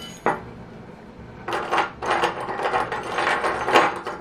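Cloth curtain and metal curtain clip rings being handled as the clips are fixed to the fabric: one sharp click early, then a couple of seconds of rustling with small clicks that stops just before the end.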